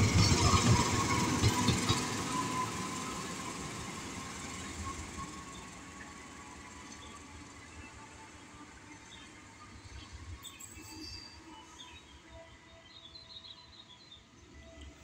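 A CC 206 diesel-electric locomotive running light past at close range, its engine and wheel noise loud at first, then fading steadily over about six seconds as it moves away.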